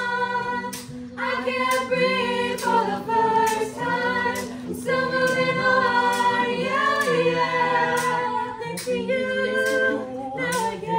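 A small group of teenage girls singing together in harmony, holding long chords that shift every second or two, with sharp clicks now and then under the voices.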